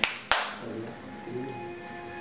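Two sharp hand claps about a third of a second apart, followed by faint music with held notes.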